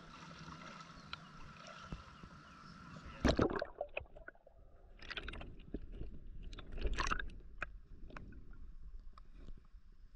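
Lake water lapping against an action camera at the waterline, then a loud splash about three seconds in as the camera goes under. After that the sound is muffled, with water gurgling and sloshing around the camera and a few more splashes.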